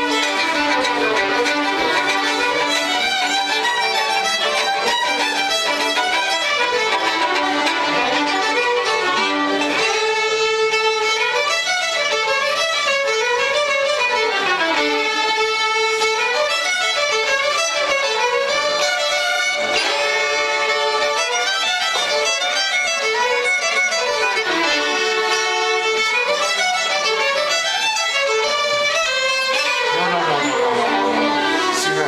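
A group of fiddles playing a tune together with steady bowing. The melody runs without a break, and its phrases come round again.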